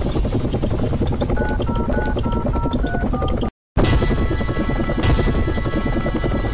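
Programme ident jingle: music with a helicopter rotor sound effect beating underneath and a short run of melody notes. The sound cuts out completely for a moment just past halfway, then comes back brighter and denser.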